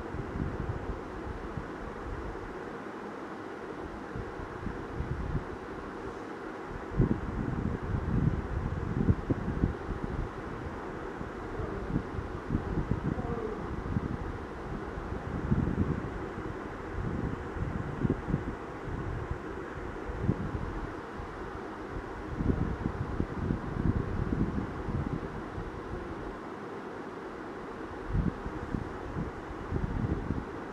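Low, uneven rumble on the phone's microphone, like air buffeting it, over a steady hiss, with louder bursts from about seven seconds in.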